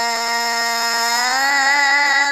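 A male Quran reciter holding one long, drawn-out note in melodic tajwid recitation; the pitch rises slightly in the second half.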